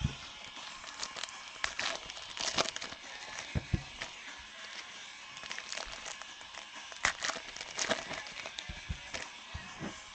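Foil trading-card pack wrappers crinkling and tearing as packs are ripped open and the cards handled, in irregular crackles scattered throughout.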